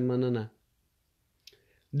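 A man speaking Pashto draws out the end of a word, then falls silent. A brief faint click sounds in the pause before he speaks again.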